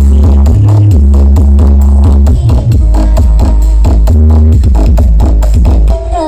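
Electronic dance music played very loud through a stacked, truck-mounted 'sound horeg' carnival sound system, with deep bass notes held for a second or more over a steady beat.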